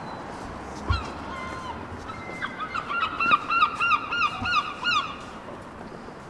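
A gull calling: a few short notes about a second in, then a fast run of repeated yelping notes, about six a second, for nearly three seconds. A short thump just before the first calls, over steady street background noise.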